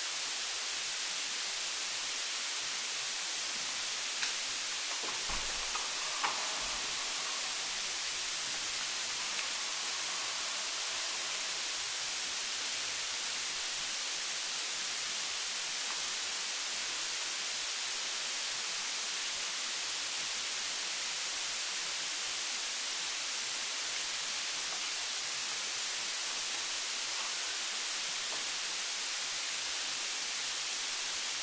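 A steady hiss throughout, with a few faint clicks and low thumps about four to seven seconds in.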